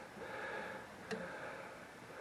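Quiet shop room tone with one small, faint click about a second in, from calipers being worked against a CVT belt stretched over the drive pulley.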